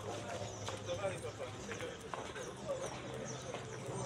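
Indistinct voices talking, over a steady low hum.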